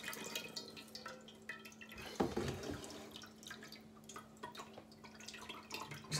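Faint, irregular drips and trickling of mead must straining through a fine-mesh filter bag into a metal pot, with one sharper knock about two seconds in.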